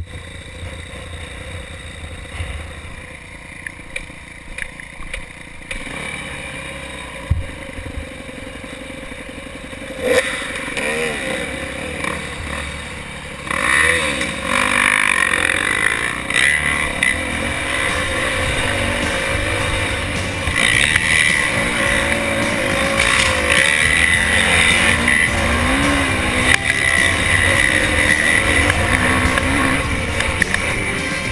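Yamaha YZ250F four-stroke single-cylinder dirt bike being ridden on a trail, picked up by a helmet camera. It is quieter for the first ten seconds or so, then louder, with the engine revving up and down as the rider works through the gears.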